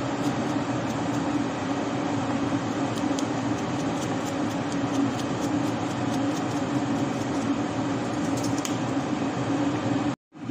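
Steady kitchen machine hum with a low droning tone, unchanging throughout, with a few faint light ticks.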